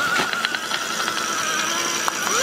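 Meditherapy Sok Sal Spin cellulite massager running with its spinning rollers pressed against a calf: a steady electric motor whine whose pitch wavers slightly under the load, with a few light clicks in the first second.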